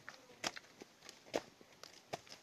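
Rustling and swishing of opium poppy plants being trampled and beaten down, in irregular short crackles with two louder swishes about half a second and a second and a half in.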